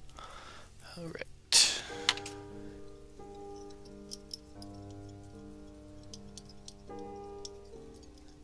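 Soft background music of slow held notes plays at a low level. About a second and a half in, a short loud burst of noise cuts in, followed by a sharp click.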